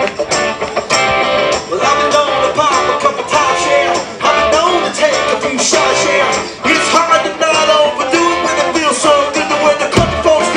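Live band playing country rock on electric guitars and drums, with a bending lead line carrying the tune and no lyrics heard.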